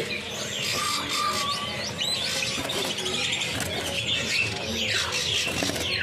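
Many caged songbirds chirping and whistling at once, short calls overlapping, with a few falling whistles near the end.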